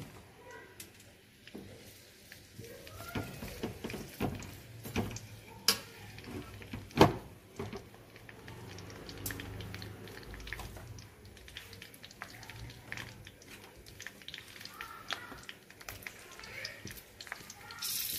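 A slotted metal spatula clinks and scrapes against an aluminium kadai as chopped green capsicum is stir-fried in hot oil. There are scattered sharp knocks, the loudest about seven seconds in.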